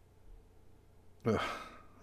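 A man's breathy "ugh", a sigh of distaste, about a second in, after quiet room tone.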